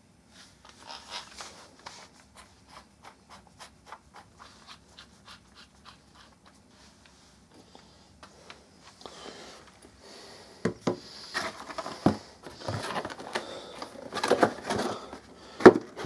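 Handling noise from a plastic cordless drill and its battery pack being unpacked. A run of faint, fairly regular clicks comes first, then louder rustling and clattering from about halfway, and a sharp knock on the wooden table near the end.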